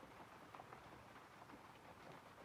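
Near silence, with faint scratching of a pencil drawing short strokes on paper.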